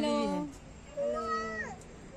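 Women's voices calling out a drawn-out "hello" that tails off and falls in pitch. About a second in comes a second short, high call that rises slightly and then falls.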